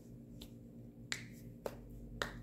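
A few short, sharp clicks from hands moving and clasping, the clearest a little past a second in and again near the end, over a low steady hum.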